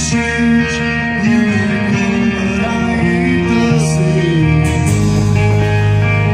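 A live rock band playing electric guitars and drums, with a male singer. The music is loud and continuous, with sustained low notes under the voice.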